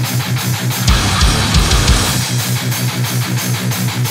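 Brutal death metal recording: distorted electric guitars and bass playing a low riff over rapid, dense drumming.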